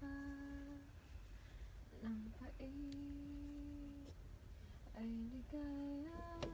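A woman humming a slow melody in a few held, steady notes, the longest lasting about a second and a half.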